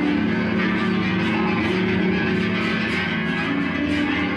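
Electric guitar played through an amplifier: a dense, steady wash of ringing, sustained notes.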